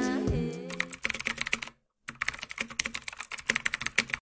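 Rapid computer-keyboard typing clicks, in two quick runs with a brief pause just before two seconds in, stopping abruptly at the end. For the first second the tail of a sung music track is fading out.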